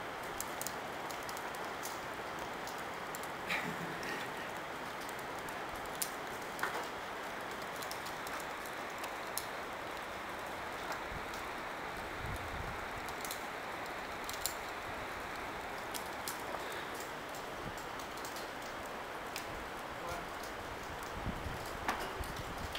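Steady hiss of rain falling, with scattered light ticks throughout.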